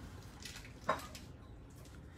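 Quiet room tone with one short, faint click about a second in.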